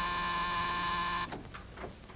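Electric door buzzer held down in one long steady buzz that cuts off about a second and a quarter in, a visitor ringing at the apartment door.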